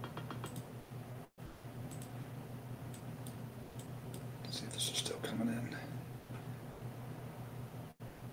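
Computer mouse and keyboard clicks, scattered and light, over a steady low electrical hum, with a brief breathy, whisper-like sound about five seconds in. The audio cuts out completely for a moment about a second in.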